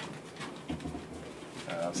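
Low room noise, then a man's voice speaking softly near the end.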